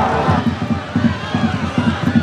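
Fast, excited television match commentary over stadium crowd noise as a football attack builds.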